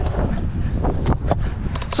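Stunt scooter's wheels rolling over a concrete skatepark ramp, with heavy wind buffeting on the action camera's microphone. A few sharp knocks come in the second half.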